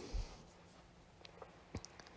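A pause in the narration: faint room tone with a soft low thump just after the start and a few small sharp clicks in the second half.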